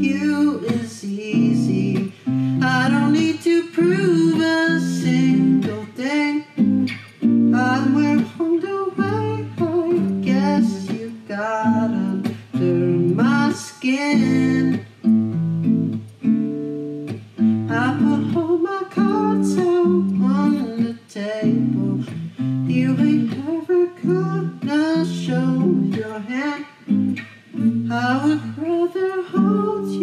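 Acoustic guitar played in a slow groove, with a male voice singing along over it.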